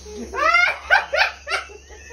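A person laughing heartily in about four short bursts, each rising in pitch, then trailing off.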